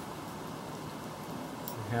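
Steady background hiss with no distinct event, and a faint tick just before a man's voice starts at the very end.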